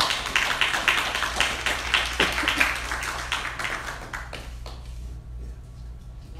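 Audience applauding with dense hand-clapping that fades away after about four seconds.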